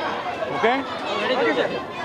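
Speech: several people talking over one another, with a man saying "okay".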